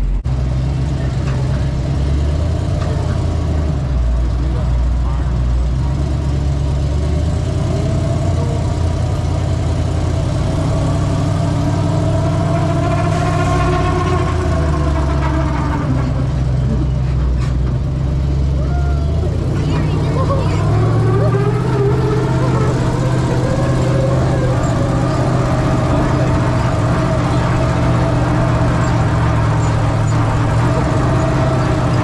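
Monster truck's engine running as the ride truck drives, with its pitch rising and falling as it revs, most plainly about halfway through and again about two-thirds of the way in.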